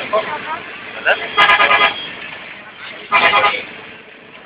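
A vehicle horn sounding twice, two short toots about a second and a half apart, each lasting about half a second, over the steady running noise of a moving vehicle heard from inside the cab.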